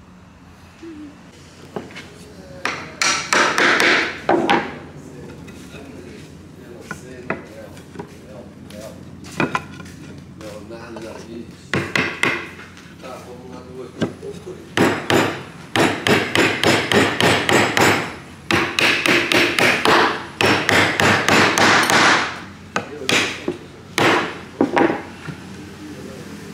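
Claw hammer striking wood, knocking the joints of a wooden window frame together: scattered single blows at first, then fast runs of many blows in the second half.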